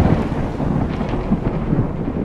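The fading tail of a loud crash: noise that dies away steadily, heaviest and crackly in the low range, its higher part thinning out over the two seconds.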